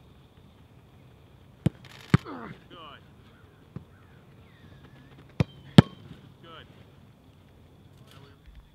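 Soccer ball struck hard in a goalkeeper shooting drill: sharp smacks of boot and gloves on the ball, in two quick pairs with a lighter one between, the last the loudest. Short shouts follow the first pair.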